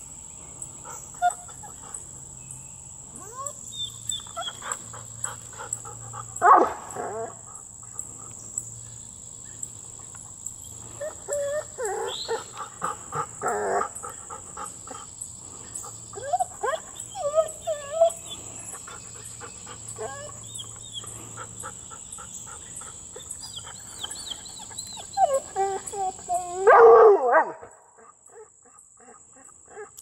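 A gray fox calling and a dog whining and barking in scattered short bursts over a steady high insect trill, the loudest outburst coming just before the end.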